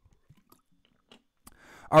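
A man taking a sip from a drink close to the microphone: a few faint small mouth and swallowing clicks, then a breath in about a second and a half in.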